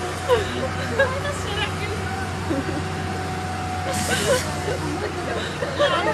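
Steady low hum of a truck-mounted crane's engine idling, under scattered voices, with a short hiss about four seconds in.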